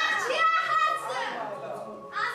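Speech: a high-pitched, young-sounding voice delivering lines.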